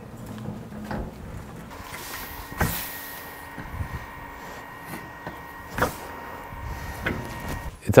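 Empty plastic-tray wheelbarrow being wheeled over grass: a low rolling rumble with a few sharp knocks and rattles from the tray and frame, three of them standing out.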